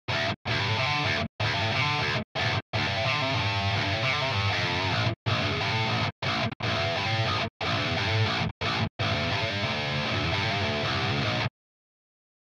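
Heavily distorted electric guitar playing a fast, choppy metal riff through a very tight noise gate. The sound cuts to dead silence in each gap between phrases, about ten times, then stops abruptly near the end: the gate is closing cleanly with no hiss or ringing left over.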